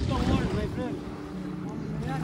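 Beach ambience: wind on the microphone and small waves lapping at the shallow water's edge, with a string of short, high rising-and-falling calls over it.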